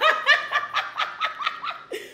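A woman laughing: a quick string of ha-ha pulses, about six a second, dying away near the end.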